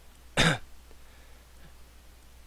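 A single short cough, about half a second in.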